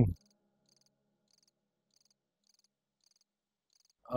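Faint cricket chirping: short high trills repeating about twice a second.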